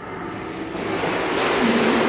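Churning, splashing swimming-pool water: a steady rushing wash that swells up during the first second, then holds.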